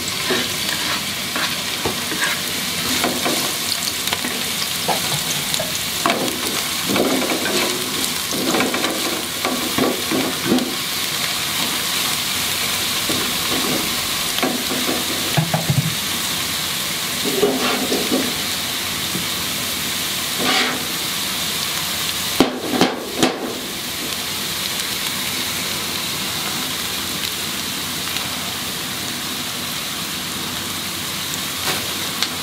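Sliced spring onions sizzling steadily in hot oil in a non-stick wok, with a wooden spatula scraping and stirring them in the first half. A couple of sharp taps come about two-thirds of the way through as an egg is cracked into the pan, then the sizzle goes on.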